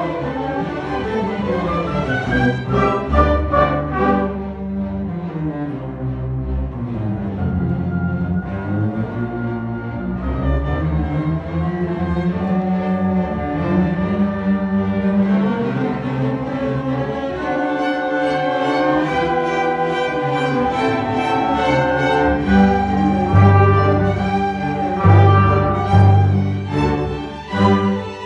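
An orchestra playing with its strings to the fore: cellos close by, with violins behind, playing sustained bowed notes and moving melodic lines. The low cello and bass notes grow stronger near the end.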